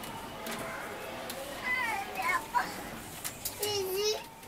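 High-pitched children's voices calling and chattering, loudest about two seconds in and again near the end, with a few light clicks.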